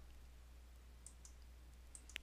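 Near silence: room tone with a few faint clicks of a computer mouse, about a second in and again near the end.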